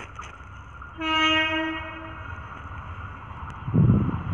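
Horn of an approaching Indian Railways electric locomotive: one steady single-tone blast of just over a second, starting about a second in. A short, loud, low rumble comes near the end.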